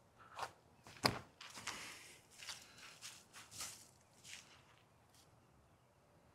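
Faint footsteps of a throwing run-up on a paved path, with a sharp snap about a second in as the loudest sound, followed by several short scuffing steps that stop a little after four seconds.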